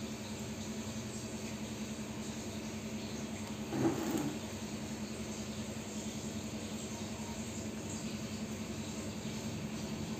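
Steady electric hum of aquarium air pumps running the tanks' aeration, with one brief louder sound about four seconds in.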